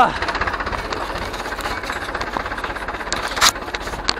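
Ursus C-360 tractor's three-cylinder diesel engine idling with a steady, rapid knock. A short sharp noise cuts in about three and a half seconds in.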